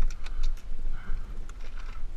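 Scattered light clicks and rattles from gloved hands handling a dirt bike's rear wheel and loose drive chain, over a steady low rumble.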